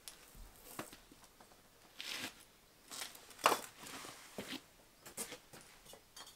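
Firebricks being handled and stacked: a series of short, dry scrapes and knocks of brick against brick, the loudest about three and a half seconds in.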